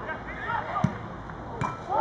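Spectators' voices in the background, with a single sharp thud of a football being struck just before halfway and a smaller knock near the end.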